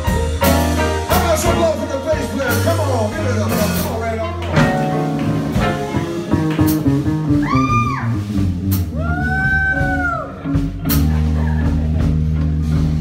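Live blues band playing: electric guitars over bass guitar, drum kit and keyboard. Near the middle a lead line holds two long notes that rise and fall in pitch.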